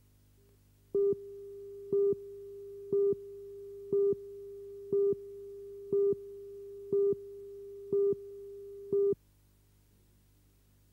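Countdown leader on a commercial tape: a steady beep tone with a louder pip once a second, nine pips in all, starting about a second in and cutting off sharply after about nine seconds.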